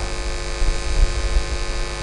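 Steady electrical hum from the microphone and sound system, with an uneven low rumble underneath, in a pause between spoken sentences.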